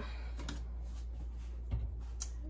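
A stainless steel mixing bowl being set down on a glass-top stove, with a faint click about half a second in and a soft, dull thump near the end, over a steady low hum.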